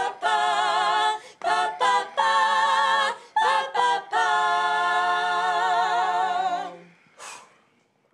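Female vocal group singing a cappella in close harmony: sustained chords with vibrato in short phrases, ending on a long hummed chord that stops about seven seconds in. A short hiss follows.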